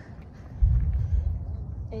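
Wind gusting across the phone's microphone, a low rumble that rises suddenly about halfway in and keeps buffeting unevenly.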